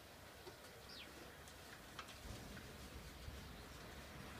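Quiet outdoor ambience with a few faint bird chirps, a single sharp click about halfway through, and a low rumble that sets in after about two seconds.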